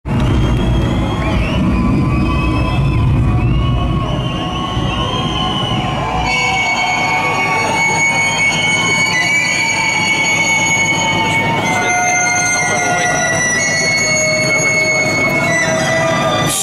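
Intro music over an arena sound system, heard from the crowd: a heavy low rumble for the first few seconds, then long sustained notes that shift pitch every couple of seconds.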